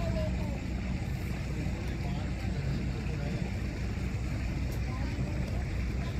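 Boat engine running with a steady low drone, heard from on board.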